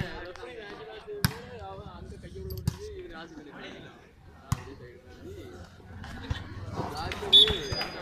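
Volleyball being hit by hand in a rally: three sharp smacks roughly a second and a half apart, the first the loudest. Talking and calls from players and onlookers run underneath.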